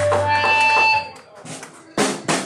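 Live hardcore punk band between songs: instrument notes held over amplifier hum, cut off about a second in, leaving a short lull with a few small clicks before a sharp hit right at the end.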